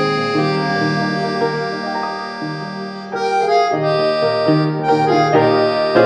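Background music: held chords that change, with a brief dip in loudness about three seconds in before the music swells again.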